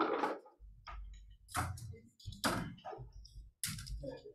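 Handling noise as a webcam is picked up and moved: a few sharp clicks and knocks over a low, uneven rumble.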